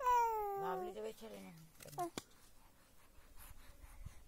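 Infant vocalizing: a loud, high squeal that falls in pitch over about a second, followed by a few shorter, lower coos and a brief high sound about two seconds in.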